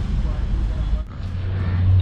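Street traffic noise with vehicle engines running nearby; just over a second in, a deep steady hum swells up and holds.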